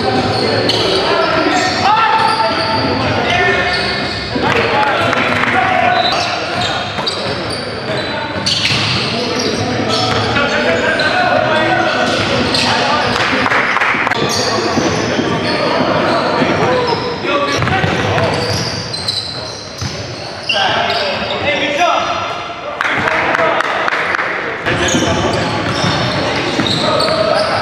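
Live basketball game sound in a gym: the ball bouncing on the hardwood court, with players' voices and calls, all echoing in the large hall.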